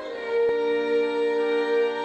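Orchestral music with bowed strings holding one long, steady chord.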